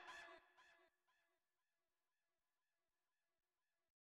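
Near silence. A faint, repeating echo trail of the preceding guitar music dies away in about the first second.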